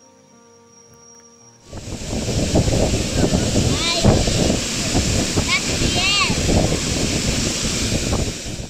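Soft music, then about two seconds in the loud, steady rush of a waterfall heard close by cuts in suddenly, with a child's voice calling out over it a couple of times.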